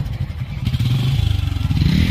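Small single-cylinder commuter motorcycle engine idling steadily, loud and close.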